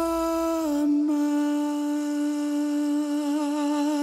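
A single long held vocal note, hummed or sung without words. It drops slightly in pitch just under a second in, then holds with a slight waver before fading.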